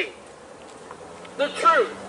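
A pause in a man's preaching with faint outdoor background noise and a faint steady low hum, then a short spoken word from the man about a second and a half in.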